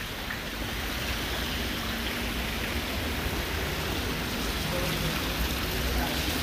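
Water from fountain jets splashing into a pool, a steady rushing noise.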